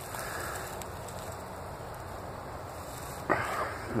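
Steady soft hiss of outdoor background noise with no distinct events, and a short sharp noise near the end.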